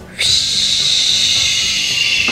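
A sustained airy whoosh with a whistling tone that slides down in pitch near the end, a flying 'take-off' sound effect for a toy glider lifted into the air, over soft background music.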